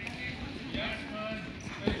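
Faint voices in a gym, then a single sharp thud near the end as the wrestlers go down onto the mat in a takedown.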